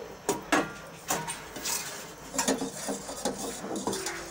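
Metal spoon stirring milk in a metal saucepan, clinking against the pan several times with short metallic rings.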